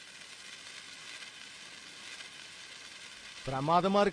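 Japanese senkō hanabi hand-held sparkler fizzing with a steady soft hiss, its glowing bead spitting sparks. A voice begins near the end.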